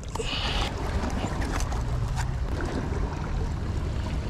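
Steady outdoor wind and sea noise: wind on the microphone over small waves washing against breakwater rocks, with a brief hiss at the very start.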